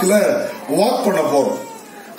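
A man preaching in a loud, emphatic, drawn-out voice, its pitch rising and falling in long arcs, dying away near the end.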